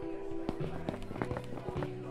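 Background music with held tones, over a quick run of footsteps in the second half.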